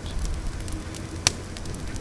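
Wood bonfire crackling, with scattered sharp pops, the loudest a little past a second in.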